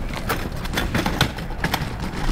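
A wheeled canvas laundry cart rolling over a concrete sidewalk, its casters clattering with irregular clicks and knocks, several a second, as they run over the joints and cracks.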